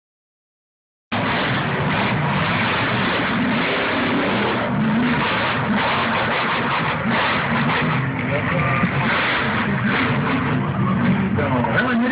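Lifted 4x4 mud truck's engine running hard and revving as it drives through the mud pit, loud and coarse through a phone microphone. The sound cuts in about a second in.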